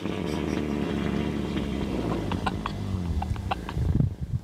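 A northern white rhinoceros letting out one long, low fart of about four seconds, with scattered crackles through it.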